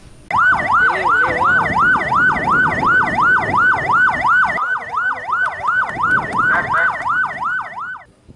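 Ambulance siren sounding a fast electronic yelp, its pitch swinging up and down about three times a second; it starts abruptly a moment in.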